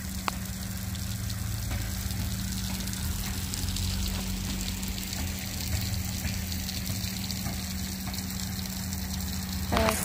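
Rain-curtain fountain: many thin streams of water falling onto a bed of stones, making a steady splashing hiss. A steady low hum runs underneath.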